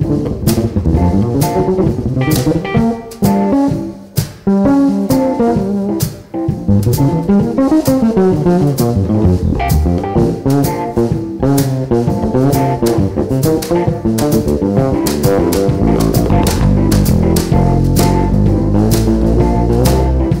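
Electric bass guitar improvising a solo in quick runs of notes, backed by a drum kit keeping time with regular cymbal and drum strikes. Near the end the bass moves down to deeper, fuller low notes.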